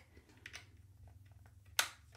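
Faint handling of a plastic MIDI controller and its USB cable, with a few light clicks, then one sharp click near the end as the cable's USB-B plug is pushed into the controller's port.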